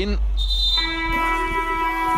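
Arena buzzer sounding one steady, held electronic tone for just over a second, signalling the end of the timeout.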